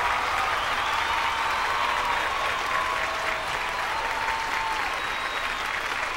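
Studio audience and judges applauding: steady clapping throughout, easing off slightly near the end.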